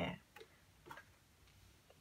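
A few faint clicks and taps of tarot cards being handled, lifted and set down on a table.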